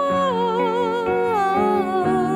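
A woman's voice holds one long wordless note with vibrato, dropping lower about three-quarters of the way through, over sustained accompaniment notes in a pop ballad.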